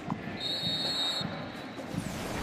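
A high, steady whistle tone lasting under a second, starting about half a second in, over low background noise.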